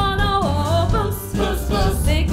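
Live band with drums and bass playing a song while a group of voices sings the melody together over a steady, pulsing bass beat.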